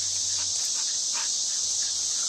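Steady high-pitched chorus of insects in the summer grass and shrubs, with a few faint short sounds over it about half a second to a second and a quarter in.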